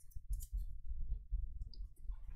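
Faint clicks and light rustling of fingers handling a trading card in a clear plastic sleeve as it is turned over, over a low steady hum.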